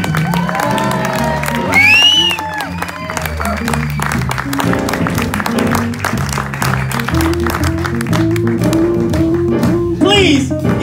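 Live jazz band playing: horns and electric guitar over piano, drums and a bass line moving in steps, with drum and cymbal strokes throughout.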